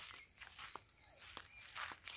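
Near silence: faint outdoor ambience with a few soft ticks.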